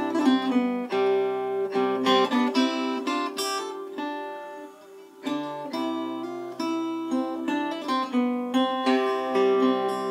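Acoustic guitar with a capo playing an instrumental passage, notes plucked and left ringing; a little before the middle it thins to one fading note, then the playing picks up again.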